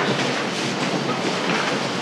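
Steady, noisy bustle of several people getting up from folding chairs and moving about a room, with shuffling and rustling of bags and papers.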